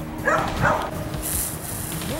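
A dog barking twice in quick succession, followed by a brief high hiss.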